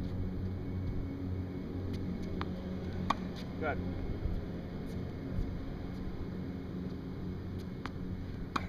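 A tennis ball bouncing on a hard court and then struck with a backhand: two sharp pops under a second apart, the racquet hit the louder, over a steady low background rumble.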